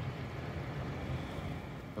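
Steady low hum of a vehicle engine running, heard over outdoor background noise.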